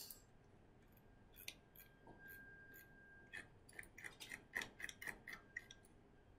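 Near silence with faint, irregular clicks, about a dozen of them in the second half, and a faint thin steady tone briefly around two seconds in.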